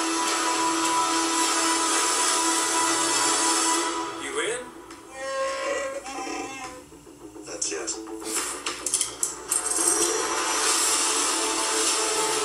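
Film trailer soundtrack played back through speakers and picked up in a small room: music and effects, dropping quieter around the middle, then a quick run of sharp hits before the mix comes back up loud.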